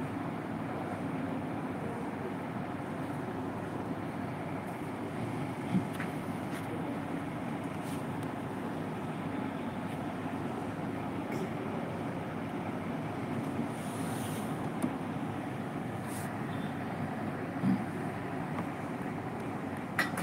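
Steady low rumbling noise with a few faint clicks.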